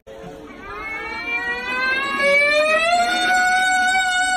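A child's long sustained shout into a large horn-shaped pipe of a voice-driven fountain, one held note that rises in pitch and grows louder over the first three seconds, then holds steady.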